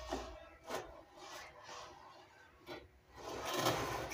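Soft rubbing and light tapping of hands handling food as thin sucuk slices are laid on bread in an open sandwich toaster, a little louder in the last second.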